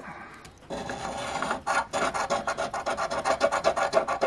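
A heavy copper coin scratching the coating off a lottery scratch ticket in rapid back-and-forth scraping strokes, starting under a second in.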